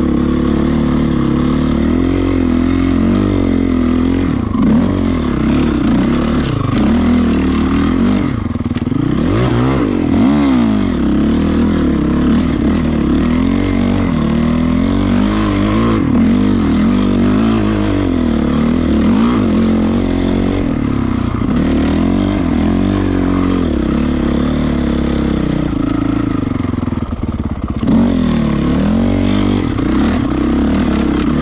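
2008 Honda CRF450R dirt bike's single-cylinder four-stroke engine under way, its revs rising and falling over and over as the throttle is worked.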